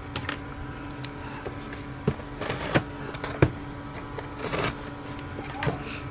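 A cardboard shipping box being handled and slid on a desk: a few scattered scrapes, taps and rustles over a steady low hum.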